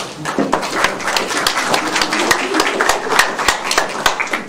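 Audience applauding: a dense patter of many hand claps.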